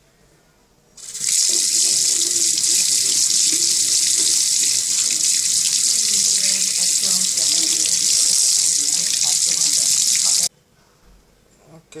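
Kitchen tap running hard onto a hand and into a stainless steel sink while the fingers are scrubbed under the stream; a steady splashing hiss that starts abruptly about a second in and stops abruptly near the end.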